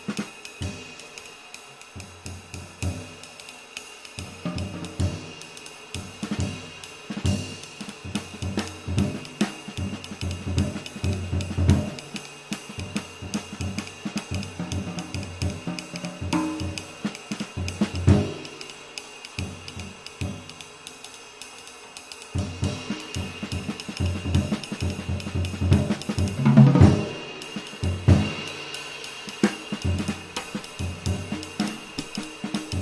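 A 22-inch hand-formed Funch mini-bell ride cymbal (2229 g) played with a wooden drumstick on its bow in a continuous pattern, its wash holding a steady ringing tone. Bass drum and other drum-kit strokes are played along with it, getting busier about two-thirds through, with the loudest flurry a few seconds before the end.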